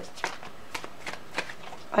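Deck of tarot cards being shuffled in the hands: several short, light card clicks.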